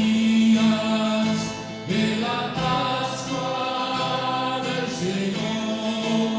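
Voices singing a slow hymn in long held notes, moving to new notes about every two to three seconds.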